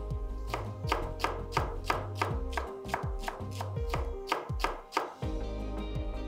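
Chef's knife chopping spring onions on a wooden cutting board in a steady run of quick strokes, about three a second, stopping shortly before the end.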